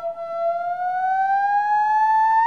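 Theremin holding a single sustained note that glides slowly and smoothly upward in pitch, without vibrato, giving a siren-like rising tone.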